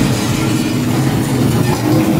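Loud, steady low rumble of vehicle engine noise from a theme-park ride's sound system, mixed with the running of the tram.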